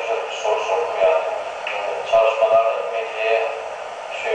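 A man's voice speaking Turkish, played back through small computer speakers and picked up by the recording microphone. It sounds thin and tinny, with no bass.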